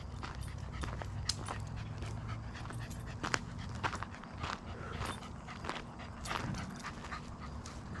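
A cocker spaniel panting hard in the heat, with scattered light clicks throughout.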